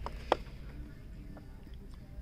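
Plastic blister-card packaging of an action figure being handled in the hand, with one sharp click about a third of a second in and a lighter one just before it, over low steady background noise.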